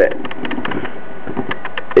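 Small homemade Newman-type DC motor, a permanent magnet spinning inside a hand-wound wire coil, running fast with a steady whir.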